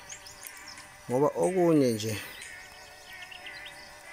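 A drawn-out call with a wavering pitch that rises and then falls, lasting about a second in the middle, over faint background music and small insect-like chirps.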